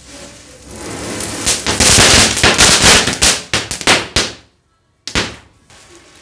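Diwali firecrackers set off by a burning matchstick chain. A rising hiss builds into a rapid, crackling series of loud bangs lasting about three seconds. The sound cuts out abruptly, then one more sharp bang follows about a second later.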